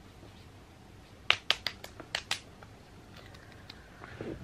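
Fingertips patting moisturizer onto the face: a quick run of about six light slaps about a second in, then a couple of faint ones.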